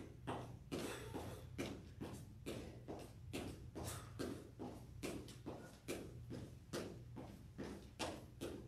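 Sneakers lightly striking a hardwood floor while jogging in place with the feet kept low: faint, even footfalls, a little over two a second.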